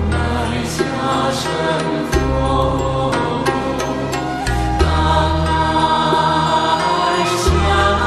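Buddhist devotional music: a chanted mantra over sustained synthesizer pads, the deep bass note shifting about every two and a half seconds, with a few light chime-like strikes.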